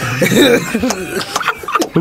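Several men laughing, with bits of talk mixed in.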